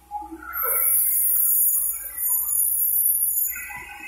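Shrill, high-pitched chirping and buzzing starts about half a second in and stops a little after three seconds, with short lower chirps scattered through it.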